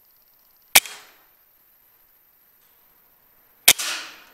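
Two PCP air rifle shots about three seconds apart, each a sharp crack with a short fading tail; the second comes as a quick double crack.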